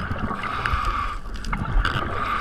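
Muffled underwater water noise through a camera housing, with a rushing hiss of bubbles that breaks off briefly about a second in and then resumes, over a low rumble.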